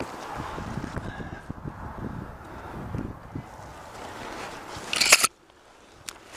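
Gloved hands and body brushing and scraping against conifer branches and bark while climbing: continuous rustling with soft knocks, and one loud brushing burst about five seconds in, after which the sound drops off sharply.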